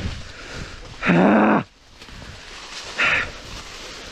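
A man's strained grunt of effort, held at one pitch for about half a second, while struggling with a fallen dirt bike, followed by a shorter breathy exhale. Dry leaves rustle and crunch underfoot throughout.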